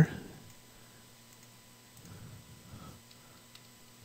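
Faint computer mouse clicks and key taps over a low, steady electrical hum.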